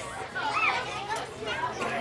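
Chatter of a crowd of children and adults, with a child's high voice rising and falling about half a second in.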